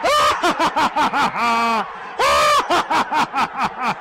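A man's voice laughing in quick bursts, then letting out drawn-out loud cries.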